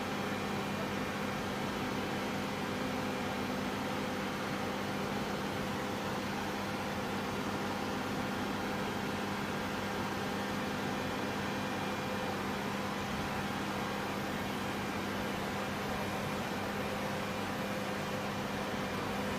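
Steady droning hum of machinery in a hangar, with a constant low tone under an even hiss, unchanged throughout.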